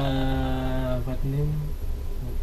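A man's drawn-out hesitation sound while thinking of an answer: a level, held "uhh" for about a second, then a shorter "mm" at a slightly higher pitch.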